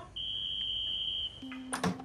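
A steady, high electronic beep lasting about a second, followed near the end by a lower tone and a few sharp clicks.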